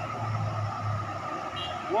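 Low, steady engine drone of a loaded Fuso truck and following cars coming up a highway incline toward the listener.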